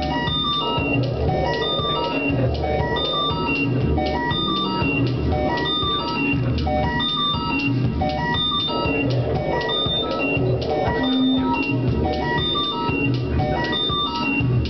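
Electronic music played live on synthesizers: a repeating sequence of short, high pitched notes over a steady low beat.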